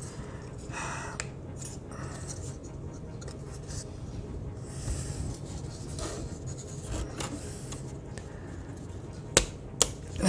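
Handling of laser-cut plywood model parts: faint rubbing and light taps as the wooden pieces are turned and fitted together, then two sharp clicks about half a second apart near the end.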